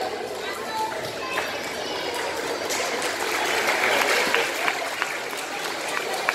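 Indistinct speech and audience chatter echoing in a large indoor hall.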